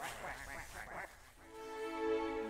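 Animated-film soundtrack: a squawking cartoon creature's vocal effect for about a second, then sustained bowed strings of the orchestral score swell in and hold.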